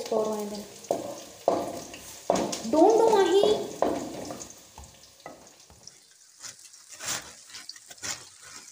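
Food sizzling and crackling as it fries in a pan, with several knocks early on and a short call from a voice about three seconds in. The fine crackling is clearest in the quieter second half.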